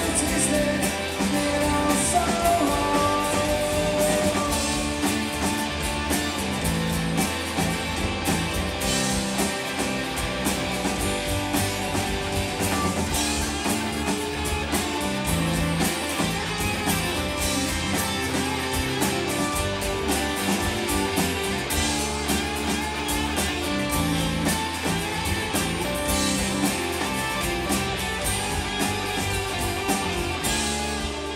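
Live indie rock band playing a song, with electric and acoustic guitars, bass guitar and drum kit.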